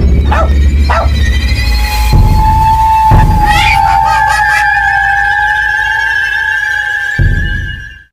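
Eerie horror-style intro music: a heavy low rumbling drone struck by a few hits in the first three seconds, with long, high, slightly wavering tones held over it. The drone stops near the end and the whole thing cuts off abruptly.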